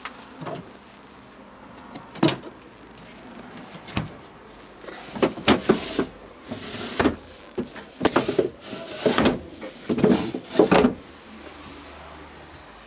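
A caravan's small built-in fridge being handled: a couple of sharp clicks, then several seconds of knocks and rattles as its compartment and door are worked and the door is shut.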